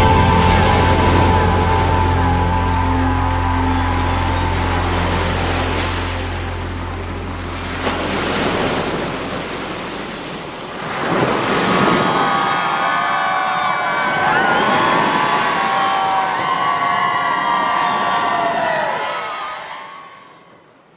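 The last chord of a rock song ringing out and dying away, giving way to surf washing onto a beach, with swells of wave noise about eight and eleven seconds in. Wavering high tones drift over the surf in the second half, and everything fades out at the end.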